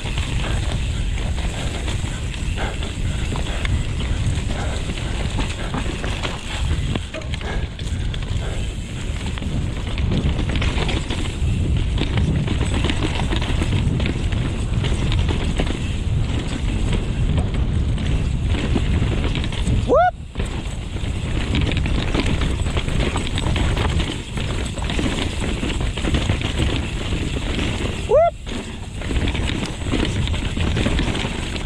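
Mountain bike riding down a dirt singletrack heard from a GoPro on the rider: a constant low rumble of wind and tyres, with steady rattling and knocking from the bike over roots and rocks. Two short rising whistles sound, one about two-thirds of the way through and one near the end.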